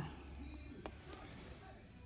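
Quiet room with a faint low hum and a single light click as a small plastic plant pot is lifted from a water tray.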